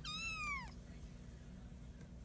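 A five-week-old Bengal kitten mewing once: a short, high-pitched call under a second long that drops in pitch at the end.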